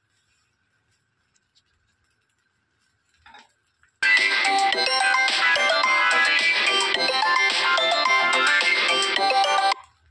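Near silence for about four seconds, then a loud electronic phone ringtone melody starts suddenly, plays for about six seconds and cuts off abruptly.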